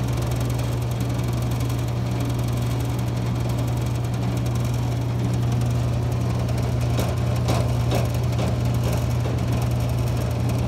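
Brake-booster test machine running with a steady low hum from its vacuum pump, with a few light clicks about seven to eight seconds in.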